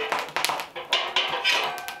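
An iron fire tool scraping and knocking against hot coals and metal at an open hearth, a quick, irregular run of short clicks and scrapes.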